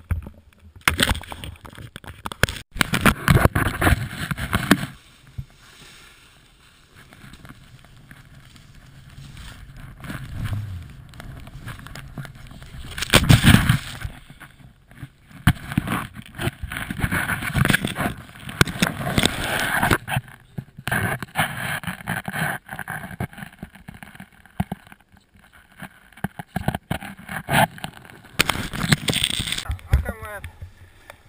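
Snowboard sliding and scraping through powder snow, with wind and handling noise rushing over an action camera's microphone. The noise comes in irregular surges with scattered knocks, quieter for a stretch early on and loudest a little before the middle.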